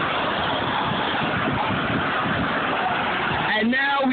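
Steady rush of a fountain's tall water jet, heard through a low-quality phone microphone, with a person's voice coming in near the end.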